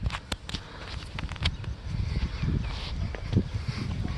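Light rain starting: scattered raindrops ticking one by one close to the microphone, over a low rumble of wind on the mic.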